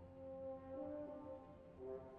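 Orchestral French horn playing a soft sustained phrase, moving to a new note about two-thirds of a second in and again near the end, over quiet low orchestral accompaniment.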